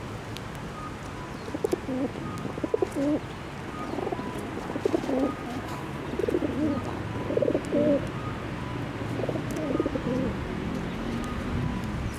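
A dove cooing in short phrases of a few low notes, repeated four times with pauses between.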